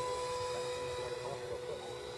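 The 64 mm electric ducted fan of an RC foam Saab Viggen jet whining in flight, a steady high tone slowly fading as the plane flies away.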